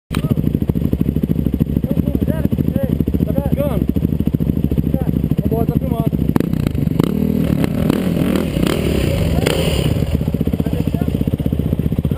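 Off-road motorcycle engines running at low revs with a fast, even firing beat, growing rougher with throttle and rattling for a few seconds about two-thirds of the way in.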